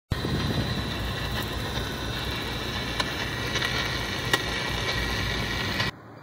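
A loud, steady rushing noise with a few faint clicks, cutting off suddenly near the end.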